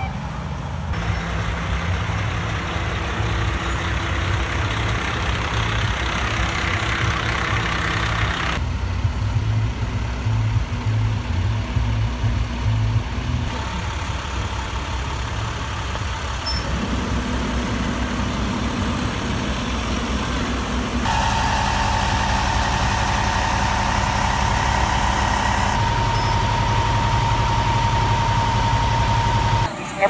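Large diesel truck and heavy-equipment engines idling in a string of short shots, the sound changing abruptly every few seconds. A steady high tone sounds through the last several seconds.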